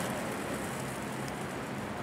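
Skateboard wheels rolling on concrete: a steady, even rolling noise with no knocks or clacks.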